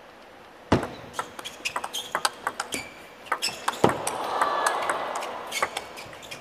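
Table tennis rally: the ball clicking off rackets and the table in quick succession, starting about a second in with a loud serve, one heavy hit near the middle, and a swell of crowd oohing and aahing over the middle of the rally.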